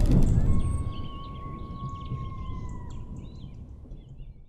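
Sound-effects tail of a channel logo sting. A deep boom dies away over the first second or so, then birds chirp over a faint nature ambience, with a long steady whistle that bends down near three seconds in.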